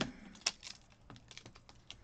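Light plastic clicks and taps from handling a clear acrylic stamping block and a sheet of clear stamps on a planner page, with one sharper click about half a second in.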